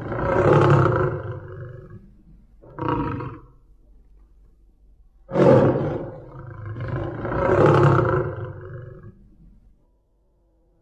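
Male lion roaring. A long roar fades over the first two seconds, a short grunt comes about three seconds in, then another loud roar starts suddenly just after five seconds, swells again and fades out near the end.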